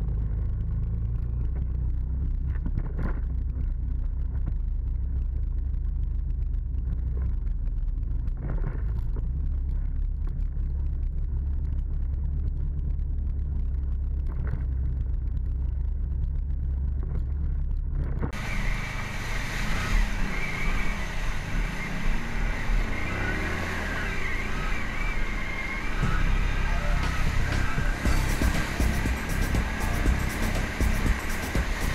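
A Can-Am ATV's engine, heard muffled as a low rumble whose pitch steps up and down with the throttle. About eighteen seconds in, the sound cuts abruptly to a much brighter, fuller and louder mix.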